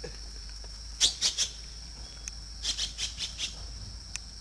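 Steps crunching on a dirt-and-gravel path, in two short clusters of clicks about a second in and again near three seconds, over a steady high insect drone.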